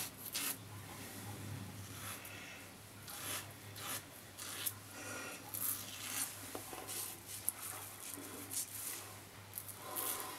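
Merkur Progress adjustable double-edge safety razor scraping through lathered stubble on the cheek and jaw in short, irregular rasping strokes. It is a noisy razor: each stroke is audible as the blade cuts the whiskers.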